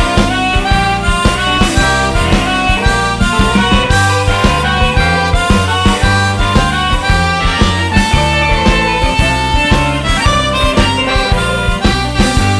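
Blues band instrumental break: a harmonica plays lead, holding and bending notes over bass, guitar and drums keeping a steady beat.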